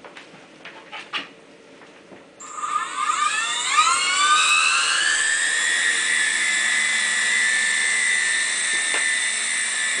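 Small coaxial electric RC helicopter's rotor motors spinning up: a high whine starts suddenly about two and a half seconds in, rises quickly in pitch, then holds steady as the helicopter lifts off and hovers. A few faint clicks come before it.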